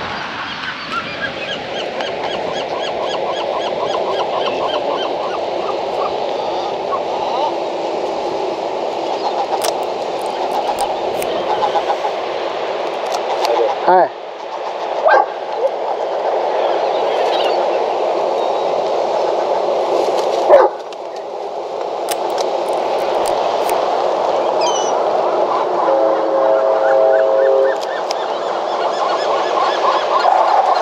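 Steady outdoor background noise with voices, broken by a few sharp clicks of a Leica M6's mechanical shutter, the loudest about twenty seconds in. Near the end a gull gives a held call.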